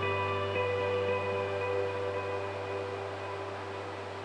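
Ambient background music: sustained ringing notes over a steady low drone, slowly fading out toward the end.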